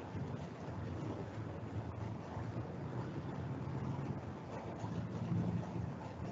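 Steady low rumbling noise like wind on a microphone, with no speech, swelling slightly near the end.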